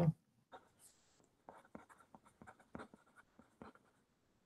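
Faint, irregular clicks and small scratches, a dozen or so spread over a few seconds, from light handling at a desk.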